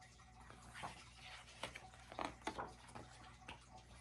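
Quiet room with a steady low hum and a few faint short clicks and rustles from a picture book being handled, with a page turned near the end.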